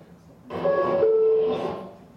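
A man's voice imitating the New York subway's two-note chime: a falling 'bing-bong', the higher note about half a second in and the lower one a moment later, held briefly.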